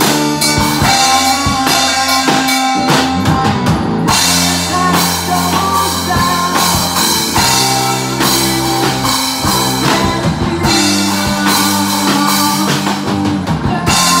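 A rock band playing live in a small room: drum kit with bass drum and cymbals driving a steady beat under an electric bass and sustained pitched notes. The cymbals drop out briefly about four seconds in and again near ten and a half seconds.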